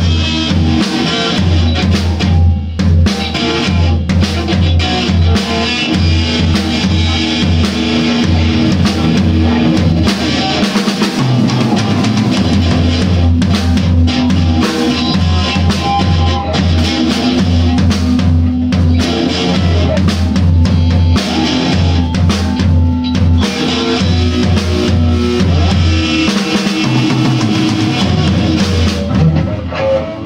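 A band jamming loudly: a drum kit with bass drum and snare played along with electric guitars, over held low bass notes that drop out briefly twice.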